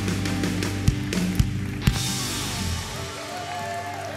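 Live worship band playing: electric guitars, drums and keyboard together, with a few sharp drum hits and a crash about halfway through, after which the music thins out.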